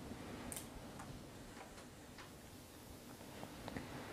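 Quiet lecture-room tone with a few faint, irregular clicks and ticks scattered through it.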